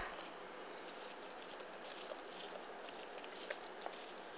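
Faint soft tapping and scraping as creamy bechamel sauce is spread over the layered potatoes and eggplant, with a slightly sharper tick near the end.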